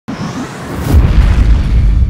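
Cinematic logo-intro sound effect: a building whoosh that lands in a deep boom just before a second in, the low rumble carrying on afterwards.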